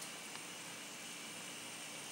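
N scale Kato-powered Dash 9 model locomotives running slowly with their train on the track: a faint steady hum under an even hiss, with one tiny click about a third of a second in.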